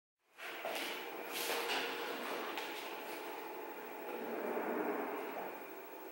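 Quiet handling noise of a violin and bow being readied, with a few light knocks in the first three seconds over the hiss of a small room, before any note is played.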